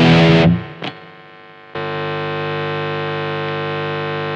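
Electric guitar with single-coil pickups through a high-gain distorted amp: a held chord is cut off about half a second in, followed by a short click. About a second later a steady buzzing hum switches on and holds unchanged for about three seconds. This is single-coil pickup hum made loud by the distortion, the noise the guitar's hidden dummy coil is meant to cancel.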